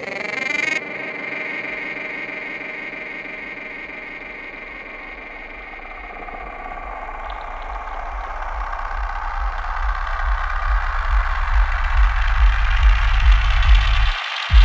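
Electronic psychedelic music in a breakdown: a sustained synthesizer pad, joined about halfway by a pulsing bass that grows louder toward the end.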